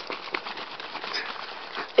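Plastic water bottle of vinegar and baking soda being shaken, the liquid sloshing inside with faint handling knocks, building gas pressure in the capped bottle.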